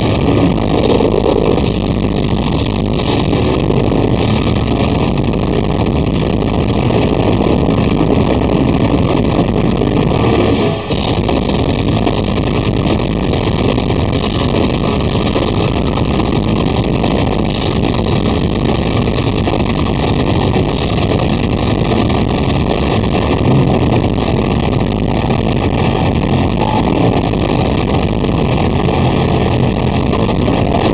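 Metal band playing live: distorted electric guitars and drums in a dense, unbroken wall of sound, with a brief dip about eleven seconds in.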